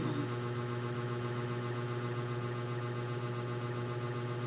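Steady low electrical hum with faint higher steady tones above it, unchanging throughout.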